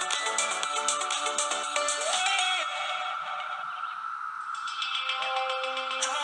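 Background music with synth-like notes over a fast, regular beat; the beat thins out about halfway through, leaving a few held notes, and picks up again near the end.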